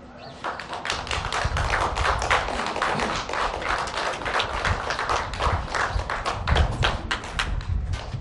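Crowd applause: many hands clapping densely and irregularly, starting about half a second in.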